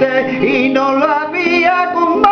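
A man singing a drawn-out, wavering line, accompanied on a nylon-string classical guitar.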